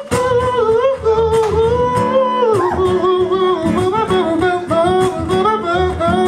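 A male singer holding long, wordless sung notes with vibrato and slides over his own strummed acoustic guitar, sung live.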